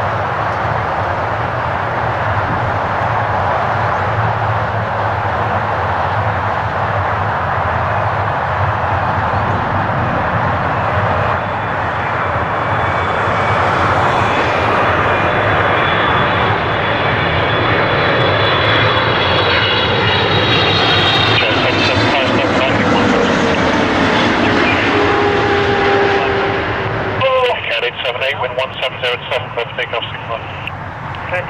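Twin-engine widebody jetliner on final approach, its engine noise growing louder as it comes closer, with a whine that falls steadily in pitch during the second half as it passes.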